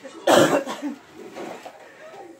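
A person coughing once, a short harsh burst close to the microphone about a quarter second in, followed by a few faint voice sounds.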